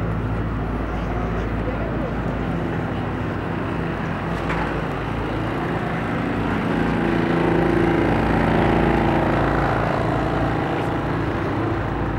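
Busy city street: steady traffic engine hum under crowd noise and passers-by's voices, swelling for a couple of seconds past the middle.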